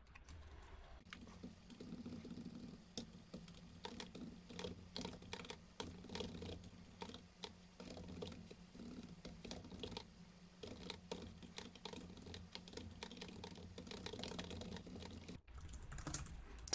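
Computer keyboard typing in irregular runs of quick keystrokes, with a faint steady low hum underneath.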